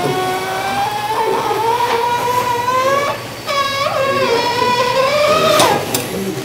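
A long, wavering, whining tone with a slowly rising pitch, in two stretches with a short break about three seconds in: a comic crying or whining sound effect edited into the programme, captioned '으에엥' (a Korean wail onomatopoeia).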